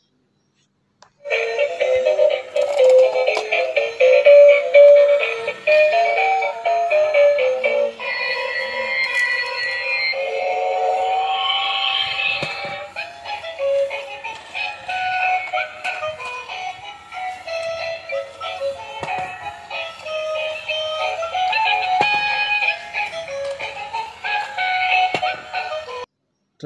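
Battery-operated transparent gear train toy playing its built-in electronic song with a synthesized singing voice, starting about a second in after a moment of silence.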